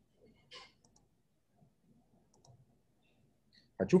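A few faint single clicks from a computer mouse, the clearest about half a second in, over quiet room tone. A man starts speaking near the end.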